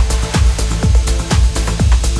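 Live electronic dance music: a steady four-on-the-floor kick drum about twice a second over a sustained bass and held synth notes.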